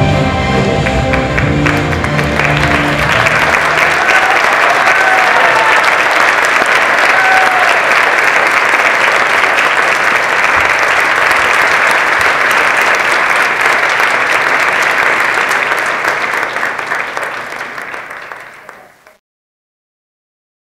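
Music ends in the first few seconds as an audience applauds. The applause runs on steadily, then fades away and stops shortly before the end.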